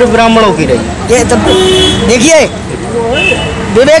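A man speaking Hindi, talking continuously.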